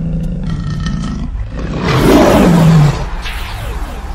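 A lion roar sound effect over a steady low rumble, swelling to its loudest for about a second midway and falling in pitch before it tails off.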